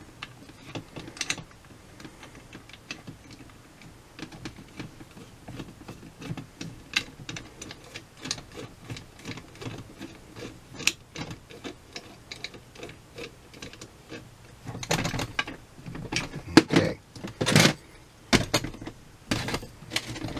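Small metal parts of a Holley 1904 one-barrel carburetor handled and fitted by hand: light, irregular clicks and taps as the brass float and its hinge are worked into place, with a cluster of louder knocks in the last five seconds.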